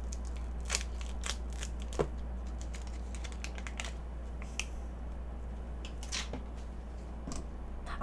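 G7 instant coffee sachets being torn open and handled: scattered short crinkles and ticks of the packet wrappers, over a steady low hum.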